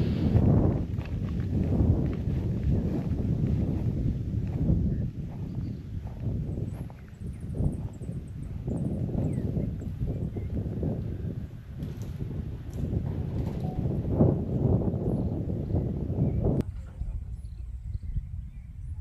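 Wind noise on the microphone, a low rumble rising and falling in gusts that thins out suddenly near the end.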